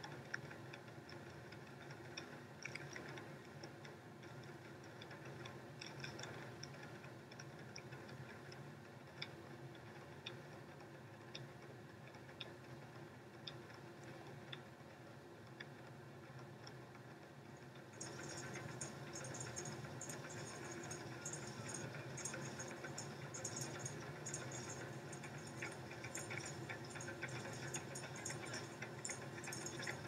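A large group of djembe hand drums played together in a steady, even rhythm of many quick strokes. A little over halfway through it grows louder and brighter, with more sharp slaps.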